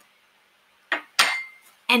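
Metal fork set down on a hard surface: a small knock about a second in, then a sharp clink with a brief ringing tone that fades.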